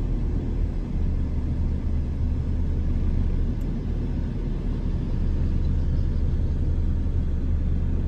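Steady low rumble of a car driving, heard from inside the cabin: road and engine noise.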